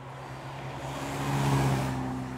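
A Carver One, a tilting three-wheeler, drives past, with a steady engine note and tyre hiss. The sound swells to its loudest about a second and a half in, then fades as it goes by.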